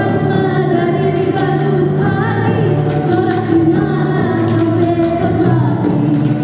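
A woman singing live with a small band, acoustic guitar and hand drums accompanying her.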